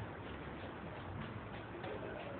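Faint background noise of the recording room in a pause between spoken phrases: a steady hiss with a low hum and a few faint, irregular ticks.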